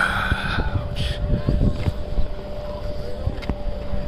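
Wind buffeting the microphone while skiing, a low rumble that comes in uneven gusts. A brief voice sounds at the very start.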